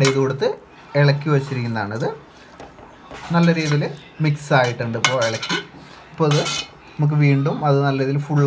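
Metal spoon stirring and scraping against the inside of a steel cooking pot, with clinks against the rim, as a thick soya-chunk and potato curry is mixed.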